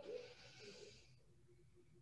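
A woman's faint breath, a soft hiss lasting about a second, then near silence.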